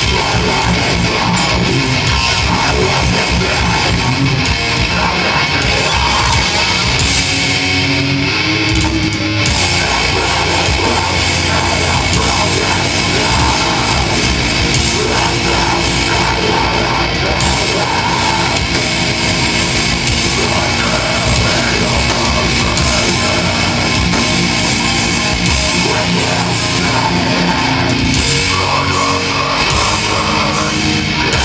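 Live metalcore band playing loud, with distorted electric guitars and a drum kit. The high end thins briefly about eight seconds in, then the full band carries on.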